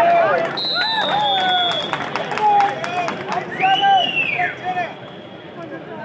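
Men's voices shouting excitedly over crowd noise during a kabaddi tackle, loudest in the first few seconds with a long rising-and-falling yell near the end, then dying down. A thin, high, steady tone runs underneath for several seconds.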